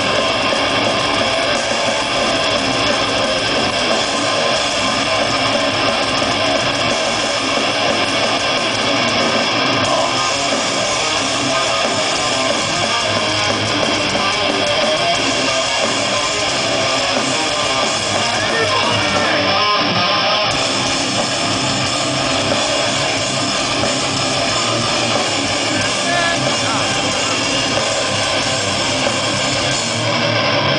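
Metal band playing live: distorted electric guitars and drums at a steady, loud level, recorded from within the crowd.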